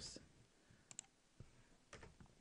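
A few faint computer mouse clicks, a close pair about halfway and two more singly after it, in near silence.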